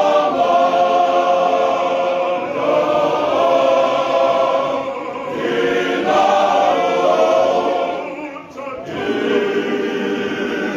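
Male voice choir singing in harmony, holding chords in phrases that shift every second or two, with a short break for breath about eight seconds in.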